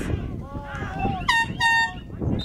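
Two short air horn blasts in quick succession about a second and a half in, over shouting voices on the field.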